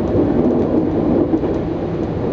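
Train running along the track, heard from inside the driver's cab: a loud, steady low rumble of wheels on rails with a few faint ticks.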